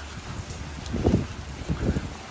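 Wind buffeting a handheld microphone, a steady low rumble with two soft low thuds, about a second in and near the end.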